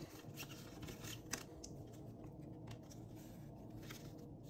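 Faint, scattered clicks and light scrapes of a stack of trading cards being flipped through by hand, card stock sliding and snapping against card.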